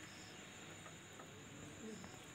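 Faint outdoor quiet with a steady, high-pitched insect trill, typical of crickets, running without a break.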